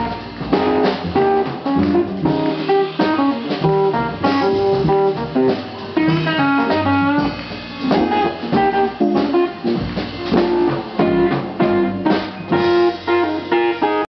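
Live jazz combo: an archtop guitar playing a melodic lead line over plucked double bass accompaniment.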